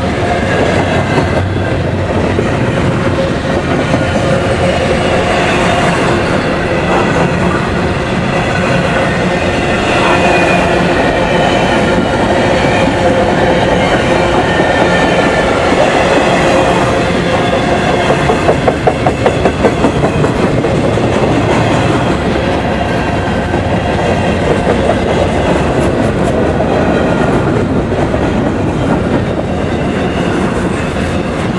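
Canadian Pacific double-stack intermodal freight cars rolling past close by: the steady rumble of steel wheels on rail, with the clickety-clack of wheels over rail joints. About two-thirds of the way through comes a quick run of sharp clacks, about five a second.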